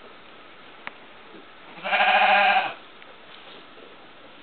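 A sheep bleats once: a single wavering call a little under a second long, about two seconds in.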